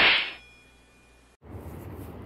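Short whoosh sound effect that fades out within half a second, followed by a pause and then faint steady background noise with a low hum.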